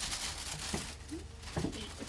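A plastic shopping bag rustling as it is picked up and handled, with a couple of light knocks.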